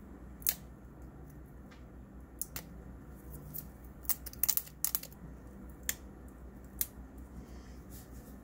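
Plastic film wrapper of a roll of breakfast sausage crinkling and clicking as fingers pick and pull it open: scattered sharp crackles, thickest about four to five seconds in, over a low steady hum.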